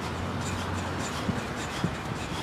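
Athletic shoes tapping lightly on artificial turf as feet cycle fast in a wall running drill, a couple of quick taps in the second half. Steady outdoor background noise with a low hum in the first second.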